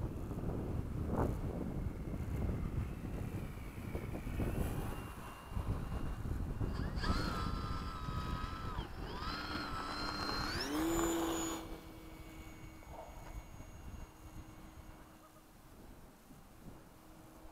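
Wind rumbling on the microphone, then the whine of the Dynam Gee Bee RC plane's electric motor and propeller from about seven seconds in. The whine dips and then rises in pitch with the throttle, and near the end settles to a fainter steady drone as the plane flies off.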